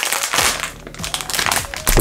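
Plastic wrapper of a Vualá Sorpresa snack cake crinkling as it is pulled open by hand. It is loudest in the first half second, then goes on more softly.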